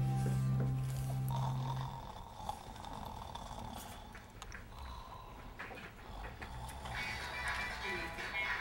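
Music with held notes fades out over the first two seconds. After that comes faint snoring from a man asleep slumped back in an office chair.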